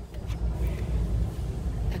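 Low steady rumble of shop background noise, with a few faint light clicks as glass nail polish bottles are handled on a plastic display shelf.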